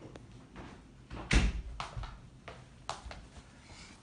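A dull knock on a workbench about a second in, followed by three lighter clicks, from test leads and a multimeter being handled and set down.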